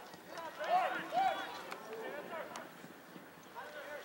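Shouts called out across an outdoor soccer pitch during play, loudest in the first second and a half, with a few short sharp knocks scattered among them.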